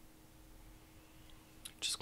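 Near silence with a faint steady hum; near the end a man draws a short breath and starts to speak.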